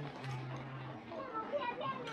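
Indistinct talking of passers-by, with higher-pitched voices in the second half, over a low steady hum.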